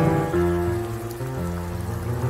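Boogie-woogie played on a keyboard piano: a quieter passage of held chords over sustained bass notes, changing a few times, before busier right-hand notes return.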